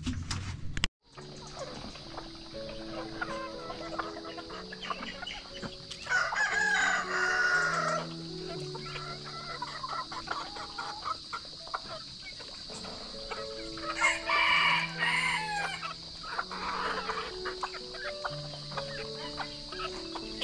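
Rooster crowing twice, once about six seconds in and again about fourteen seconds in, each call lasting about two seconds. Background music and a steady high insect drone run underneath.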